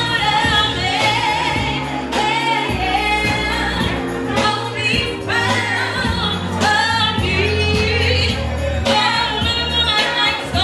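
A woman singing live into a handheld microphone, amplified through the club's speakers, over accompanying music with a steady bass line; her held notes waver with vibrato.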